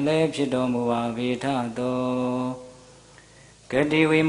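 A Buddhist monk's male voice chanting into a handheld microphone in a slow, melodic recitation, holding long steady notes. The chant breaks off for about a second past the middle and starts again just before the end.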